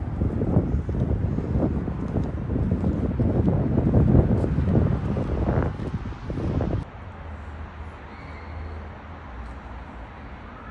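Wind buffeting a phone microphone, a loud, uneven rumble. It cuts off suddenly about seven seconds in, leaving a much quieter background.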